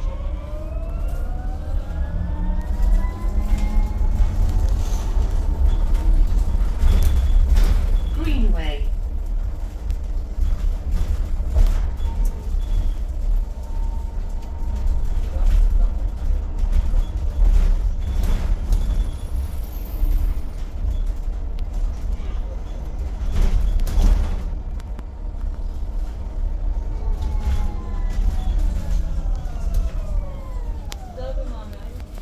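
Enviro200EV electric bus under way: the traction motor's whine rises as it speeds up, holds at a steady pitch while it cruises, then falls as it slows near the end, over loud road and body rumble with scattered rattles and knocks from the cabin.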